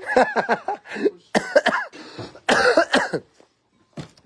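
A person coughing, in three bouts with short pauses between.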